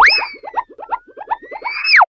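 Cartoon springy boing sound effect: a quick upward pitch sweep, then a rapid run of short wobbling chirps about six a second, ending in a downward sweep.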